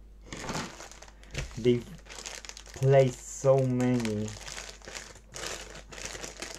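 Clear plastic bags and packaging crinkling and rustling as they are handled and pulled open, in scattered bursts. A person's voice gives a short held, hummed-sounding tone about one and a half seconds in, and a longer one from about three to four seconds in.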